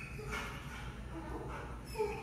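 A dog barking and whining faintly, echoing down a large tiled hallway.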